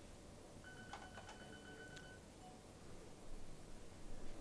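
Quiet room tone, with a faint, steady, high electronic-sounding beep lasting about a second and a half that starts about half a second in, and a few faint clicks.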